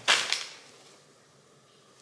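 A short, sharp rustle and snap as a garment is pulled from plastic mailer packaging and shaken out, fading within about half a second to a faint room hush.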